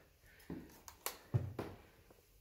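Footsteps going up a wooden staircase: about four dull footfalls, each a short knock.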